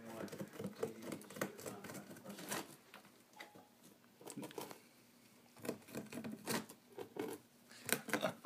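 Rabbits chewing on a dried-grass hut: quick, irregular crunching and crackling of dry grass, with a quieter lull about halfway through.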